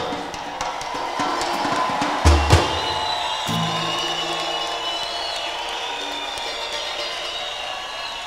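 Live samba band music closing out a song: a heavy drum beat about two seconds in, then held notes ringing out and fading, over a steady haze of noise from a large crowd.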